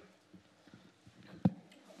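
A pause between speech: quiet room tone with a few faint low knocks and one sharp knock about a second and a half in, typical of a handheld microphone being handled.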